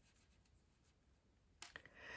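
Near silence, with faint light scratching of a metal crochet hook drawing yarn through stitches. A brief soft sound comes near the end.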